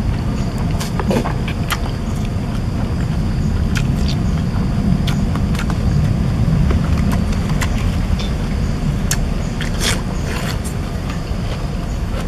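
Close-up eating sounds: a man chewing a mouthful of food, with scattered wet clicks and smacks from his mouth, over a steady low rumble.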